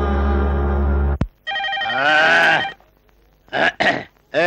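Background film music that stops abruptly about a second in, followed by a telephone ringing: one longer ring, then two short bursts.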